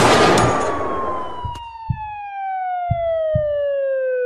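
In a break in a slowed rap track, a loud crash-like burst gives way to a single long siren-like tone that slowly falls in pitch, with a few scattered low thumps beneath it.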